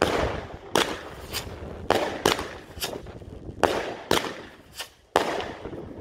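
Fireworks exploding: about nine sharp bangs at uneven intervals, each trailing off in a ringing echo, with a loud one near the end.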